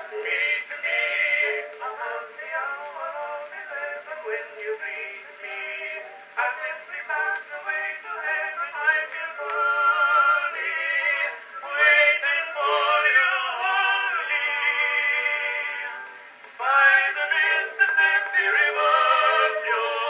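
Edison cylinder phonograph playing a Blue Amberol cylinder record through its horn: an old acoustic recording of a song, sounding thin, with no bass.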